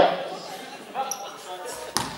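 A basketball bounced once on a sports-hall floor near the end, a sharp single bounce, as the free-throw shooter dribbles at the line.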